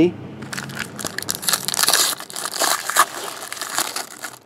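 Foil wrapper of a trading-card pack crinkling and tearing as it is handled and ripped open, a dense run of sharp crackles starting about half a second in.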